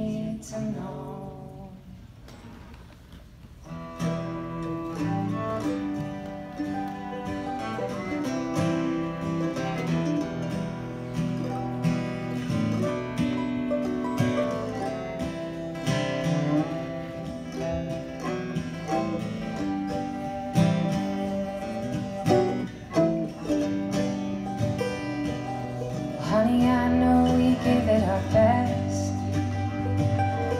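Close three-part a cappella vocal harmony dies away in the first second, followed by a short hush. From about four seconds in an acoustic string band plays: mandolin, acoustic guitar and upright bass, with the bass fuller and voices coming back in near the end.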